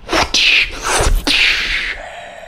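A man beatboxing: a quick run of sharp hissing "psh" bursts from the mouth, with clicks and a low thump about a second in.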